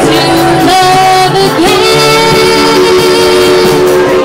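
Indie band playing a song live, with a voice singing held notes over amplified instruments and a steady bass line.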